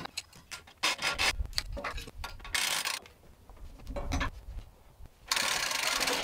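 A large white oak log being rolled over on a portable sawmill's steel bed with a log-turning tool: irregular knocks, scrapes and ratcheting of wood and metal, with low thuds as the log shifts and two longer scraping stretches, one about halfway through and one near the end.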